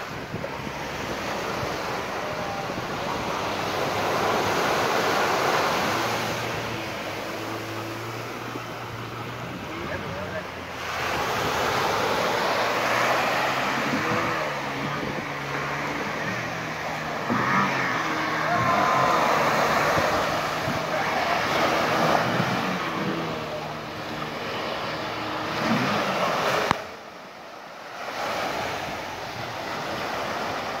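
Waves breaking and washing up a sandy beach, with wind buffeting the microphone; the sound swells and falls with the surf and cuts out briefly near the end.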